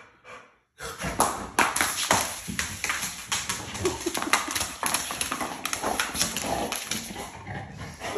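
A dog's claws clicking and tapping on a hard wood-look floor, a quick, irregular run of taps that starts about a second in, as the dog moves about with a toy in its mouth.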